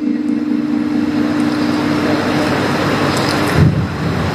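A qari's Quran recitation: one long, steady low note is held and breaks off about three and a half seconds in. A steady hiss sounds behind it.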